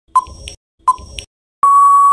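Quiz countdown-timer sound effect: two short ticks, each a brief ping followed by a softer click, then a long steady electronic beep near the end that signals time is up.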